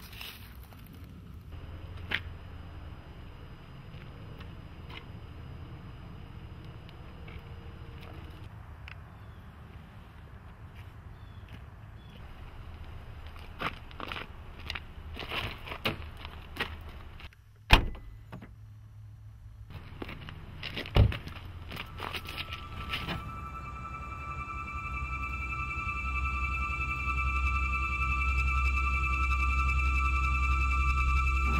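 Outdoor rumble with scattered knocks and handling sounds, then a sharp car-door thump and a second one a few seconds later. Sustained eerie music tones then come in and swell steadily louder.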